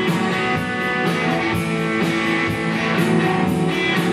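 Live rock band playing: two electric guitars through amplifiers, with a drum kit keeping a steady beat of cymbal and drum hits.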